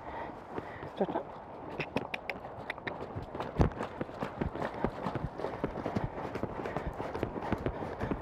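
Hoofbeats of a ridden horse moving around an arena: a quick, uneven run of soft thuds on the arena surface.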